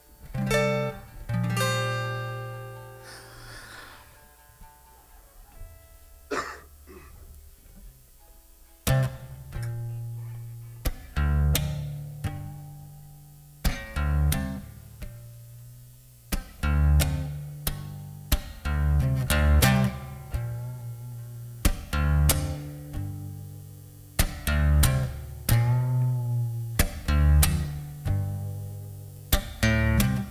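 A steel-string acoustic guitar chord is strummed and left to ring out, followed by a few quiet single notes. About nine seconds in, a song intro begins: rhythmic acoustic guitar strumming over a bass line, with electric guitar.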